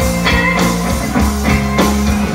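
Live rock band playing loudly: electric guitars and bass over a steady drum-kit beat.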